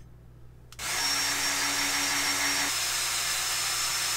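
Electric drill running, boring holes through an aluminium bar. It starts about a second in after a click and runs steadily with a constant high whine; a lower hum in it drops out about halfway through.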